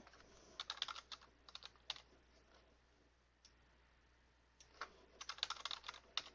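Faint computer keyboard typing in two runs: a scatter of keystrokes in the first two seconds, a pause, then a quick burst of keystrokes near the end.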